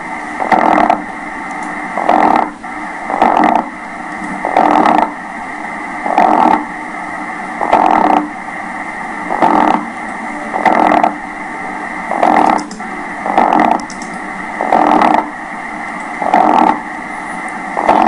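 EMG amplifier loudspeaker playing a classic myokymic discharge: brief bursts of grouped motor unit potentials repeat about every one and a half seconds, the marching rhythm typical of myokymia. A steady electrical hum and whine run underneath.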